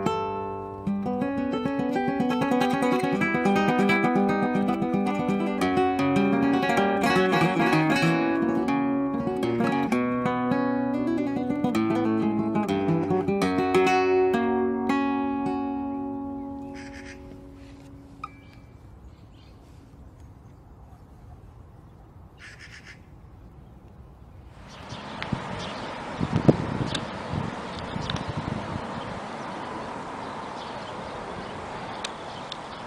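Solo flamenco guitar played fingerstyle, quick runs of plucked notes that ring out and fade away about sixteen to eighteen seconds in. Near the end a steady rushing noise with a few sharp knocks takes over.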